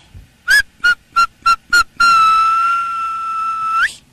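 A whistle blown in five short blasts and then one long, steady blast that rises in pitch just before it cuts off.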